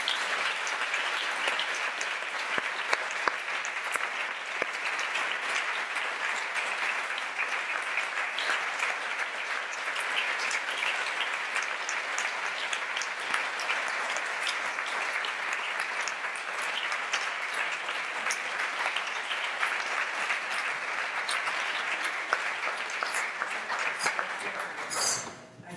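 Sustained applause from a large seated audience in a wood-panelled hall, steady throughout.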